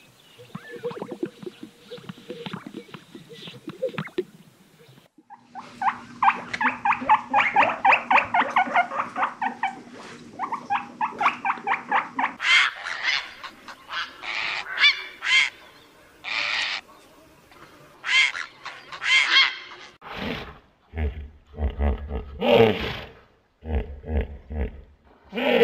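A run of animal sounds: faint crackling display sounds of greater sage-grouse on a lek, then a colony of large wading birds calling, first a fast rattling run of about five calls a second and then separate harsh calls. Near the end come deep low grunts.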